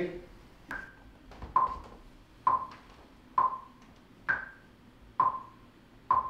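Metronome click track counting in before a vocal take: seven short pitched clicks about 0.9 s apart, near 67 beats a minute. Every fourth click is higher-pitched, marking the downbeat of each bar.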